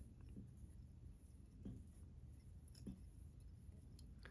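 Near silence: room tone with about three faint, soft handling sounds from fingers wrapping chenille around a fly-tying hook.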